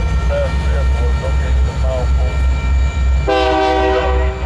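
Freight train rolling through a grade crossing: a low steady rumble of the passing cars with the crossing bell ringing. A horn starts suddenly about three seconds in and holds to the end.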